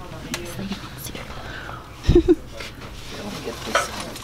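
Handling noises: a few light clicks and knocks of objects being moved, with a heavier thump about halfway through, under faint voices.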